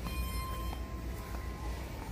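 An electronic beep-like tone held for about a second and a half, over a steady low rumble of store background noise.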